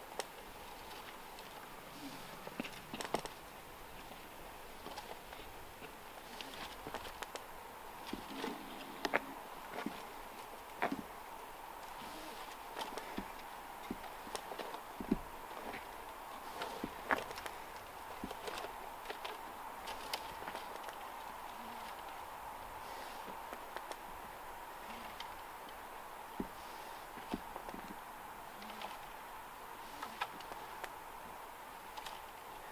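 Irregular clicks, knocks and rustles of rope-climbing gear and boots against a beech trunk as a climber steps up a rope in a foot loop, over a faint steady hum.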